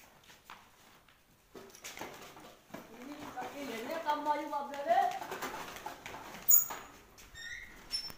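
A person's voice making a drawn-out, wavering vocal sound for about two seconds, starting about three seconds in, with no clear words. A single sharp clack follows about six and a half seconds in.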